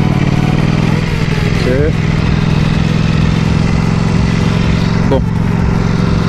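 Ducati Panigale V4 S's V4 engine running at low revs in second gear, a steady low note with little change in pitch, under a steady rush of wind noise.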